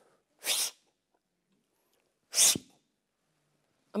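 A man's voice making two short hissing bursts of breath through the mouth, about two seconds apart, imitating the sound of an arrow being shot.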